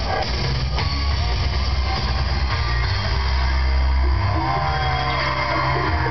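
Live rock band playing a loud, mostly instrumental passage of a J-rock anime song: electric guitars over heavy bass and drums, recorded from within the crowd.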